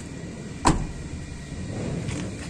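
Rear side door of a Mitsubishi Xpander being shut: one solid thud of the door closing, about two-thirds of a second in.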